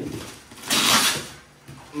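Plastic mailer bag being pulled off a cardboard parcel: one loud rustle and crinkle of plastic packaging about two-thirds of a second in, lasting about half a second.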